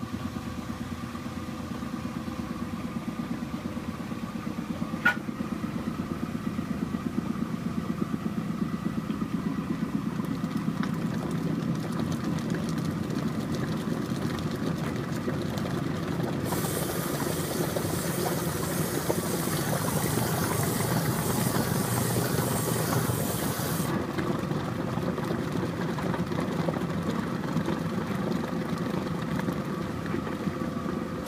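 1966 Philco washing machine starting up and running steadily, its motor humming under the churn of water swirling in the tub, with a single click about five seconds in. About halfway through, a hiss of rushing water comes in and stops suddenly some seven seconds later.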